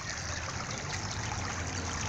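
Shallow creek water trickling steadily over and between stones, a thin low flow.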